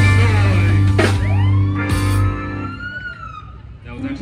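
Live band of keyboards, drum kit, electric guitar and saxophone playing, with sharp drum hits about one and two seconds in. The full band drops out a little after two seconds, leaving one sliding, held tone that rises and then falls as the sound fades.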